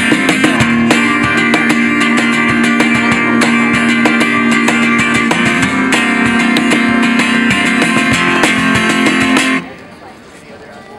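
Acoustic guitar strummed with hand-beaten cajón percussion in an instrumental passage of a live song, with sharp percussive hits throughout. The music stops suddenly near the end.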